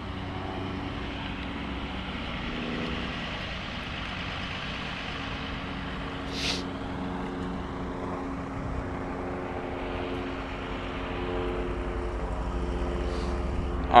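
Steady outdoor rumble with a faint engine-like hum running through it, as from a distant motor vehicle, and a brief hiss about six and a half seconds in.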